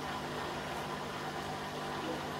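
Steady low hum of a small electric motor running, with a faint even hiss.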